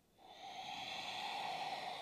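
A woman's long, audible exhale, one steady breath out of about two seconds, as she sinks into child's pose.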